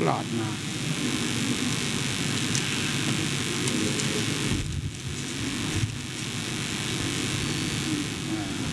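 Indistinct murmur of many voices from a seated crowd, over a steady hiss.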